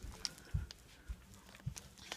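Footsteps on a hard floor: three soft thumps about half a second apart, with small clicks between them.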